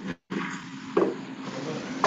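Background noise from a participant's unmuted microphone on a video call: a steady rush that cuts out briefly just after the start, with a knock about a second in and another near the end.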